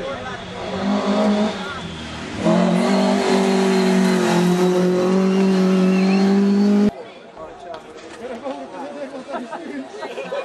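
Hill-climb race car engine held at high revs, a loud, steady note that sags slightly in pitch for about four seconds before cutting off abruptly. A shorter burst of engine comes about a second in, and crowd chatter follows the cut.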